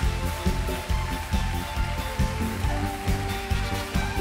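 Live trot music from a stage band, with a steady beat and a long held note over it that steps down in pitch past the middle.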